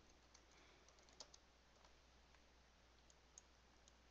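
Faint computer keyboard keystrokes, a few scattered taps as a short word is typed, over near silence.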